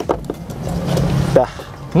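Third-row seat of a Toyota Innova being pushed back upright into place: a couple of short clicks, then about a second of rubbing and rattling from the seat frame and fabric.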